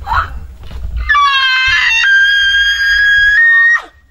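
A woman screams one long, high-pitched scream, starting about a second in, rising in pitch and then holding steady for nearly three seconds before breaking off near the end. A shorter cry comes just before it.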